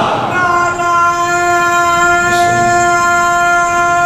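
A man's voice through the hall's loudspeakers holding one long sung note, likely the drawn-out 'Ali' of a majlis orator's recitation. It enters about half a second in and stays at one unwavering pitch throughout.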